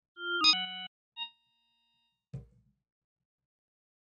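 Pilot software synthesizer, sequenced from Orca, playing a quick run of short electronic notes in the first second and a faint blip after it. A low percussive hit follows a little after two seconds.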